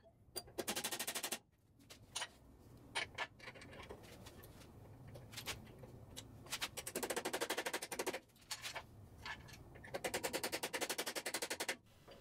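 Rapid runs of small metallic clicks, about a dozen a second, in bursts of about a second, with a few single clicks between, from hand-tool work refitting the blade guide bearing axles on a combination bandsaw.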